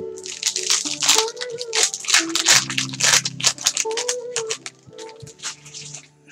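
Foil wrapper of a Prizm basketball card pack being torn open and crinkled by hand: a dense run of crackles over the first few seconds, thinning out toward the end, over background music.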